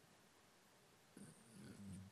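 Near silence, then about a second in a man's faint low hesitation murmur, a drawn-out "yy", as he gets ready to speak again.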